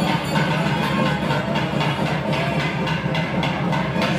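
South Indian temple music: a nadaswaram playing a gliding melody over regularly repeated percussion strikes and a steady low drone.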